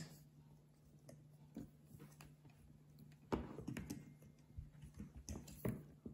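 Faint clicks and rustles of hands handling a plastic squishy-maker bottle and cap, with a louder brief handling noise about three seconds in.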